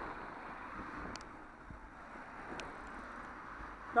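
Steady road traffic noise as a coach passes close alongside a bicycle, with wind on the microphone and a couple of faint clicks.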